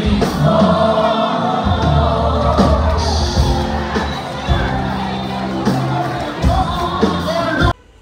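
Live gospel music: a choir singing with band accompaniment over a strong bass, cutting off abruptly near the end.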